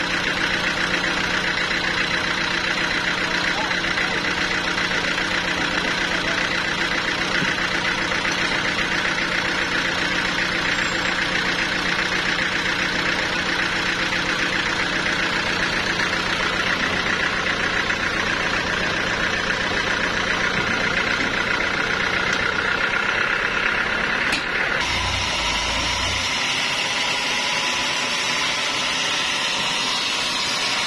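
Sawmill engine running steadily at idle while the log is being positioned. About 25 seconds in, the sound changes abruptly to a higher, hissier running sound.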